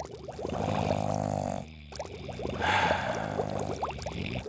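Hot tub water bubbling and gurgling, swelling louder twice.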